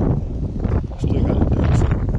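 Wind buffeting an outdoor microphone: a loud, uneven low rumble.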